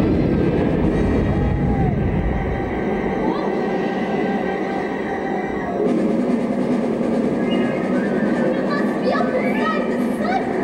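Stage tornado effect: a loud, dense rushing storm noise like a train rumble, heaviest and lowest in the first few seconds, mixed with orchestral music.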